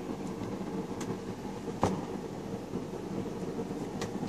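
Steady low room hum, with faint paper and handling sounds as the pages of a large, heavy art book are turned; a sharp click a little before the midpoint.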